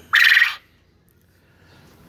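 A quail gives one short, harsh, raspy call, about half a second long, right at the start.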